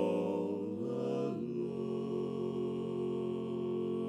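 Barbershop quartet of four men singing a cappella in close four-part harmony. The chord shifts about a second and a half in, then a long chord is held steady.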